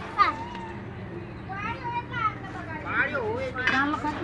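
Adults and children talking and calling out in the background, with several short stretches of voices and no clear words.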